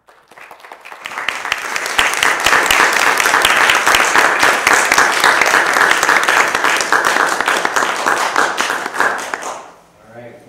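Audience applauding: many hands clapping, building up over the first second or two, holding steady, then dying away near the end.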